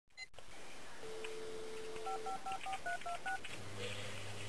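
Telephone sound effect: a dial tone for about a second, then seven quick touch-tone key beeps as a number is dialed. A low steady buzz starts just before the end.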